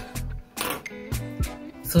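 Background music with a beat.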